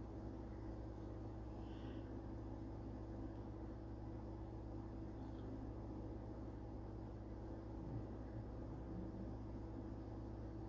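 Quiet room tone: a faint steady low hum, with a soft small knock about eight seconds in.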